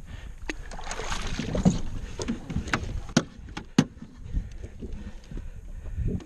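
Water sloshing against a small aluminum fishing boat, with a noisy splashy stretch about a second in and several sharp knocks on the hull or gear over the next few seconds.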